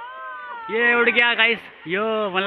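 A person's voice letting out two long, drawn-out exclamations of 'ohh' and 'yeah', each rising and falling in pitch, after a fainter falling call at the start.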